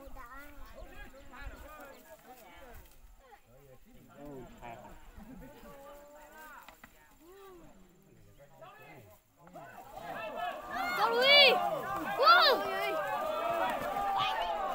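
People's voices talking throughout, low at first, then several loud, excited overlapping voices from about ten seconds in.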